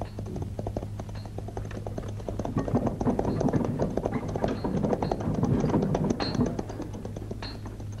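Film soundtrack music: a rapid run of dry clicking, tapping percussion that thickens and grows louder in the middle, over a steady low hum.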